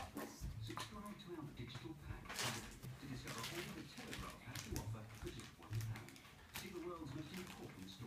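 Electronic Furby toy making faint, short babbling creature noises while being poked and stroked, with scattered clicks.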